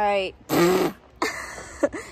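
A woman's short wordless vocal sounds: a brief cry with falling pitch, then a loud breathy, buzzing burst and a few more short voiced noises.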